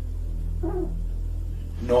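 A steady low hum, with a short falling pitched sound about two-thirds of a second in; a man starts speaking near the end.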